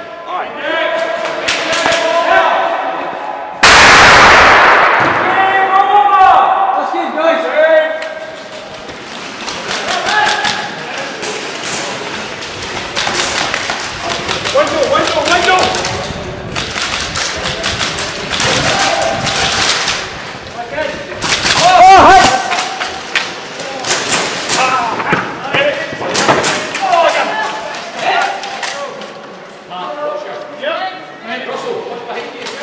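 Indistinct voices of players in a large echoing hall, over running footfalls and repeated thuds and knocks. Two loud sudden bursts of noise stand out, about four seconds in and again a little after twenty seconds.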